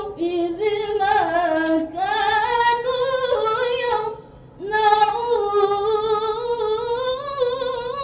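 A teenage girl's voice in melodic Quran recitation (tilawah), drawn-out ornamented notes that waver in pitch. There is a short breath pause a little after four seconds in, then a long sustained phrase.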